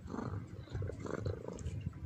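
A domestic cat purring close to the microphone: a steady, rough, pulsing low rumble.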